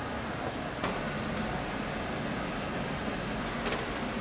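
Steady kitchen ventilation hum, with a single knock of a knife on a plastic cutting board a little under a second in while pork belly is being sliced. A short rattle of clicks comes near the end.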